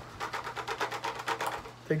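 A person laughing: a quick run of short laughs, about ten a second, lasting over a second.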